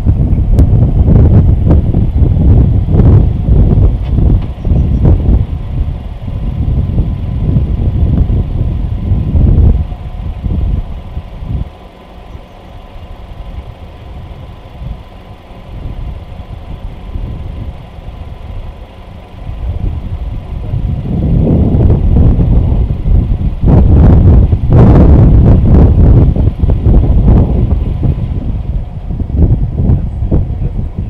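Gusty wind buffeting the microphone, a loud, uneven low rumble. It is heavy at first, eases to a calmer spell in the middle, and comes back strong near the end.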